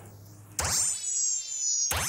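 Comedy magic-spell sound effect: a quick rising whoosh about half a second in, then a high, shimmering tone gliding slowly downward, with a second whoosh near the end.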